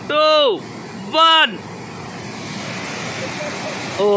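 Two loud shouted calls from a man, then the steady rush of water pouring out of a dam's open sluice gate, growing louder toward the end.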